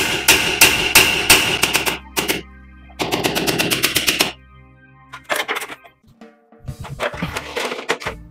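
Hammer striking nails into a ceiling-frame bracket, sped up three times so the blows run together into rapid rattling bursts. The two longest bursts fill most of the first half, with shorter ones near the end.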